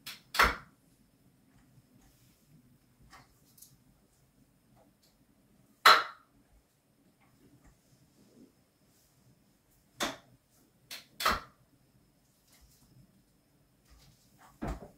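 Hinomi H1 Classic V3 office chair's recline mechanism and frame giving short clunks and creaks as it tilts under a seated person, about six separate sounds with the loudest about six seconds in.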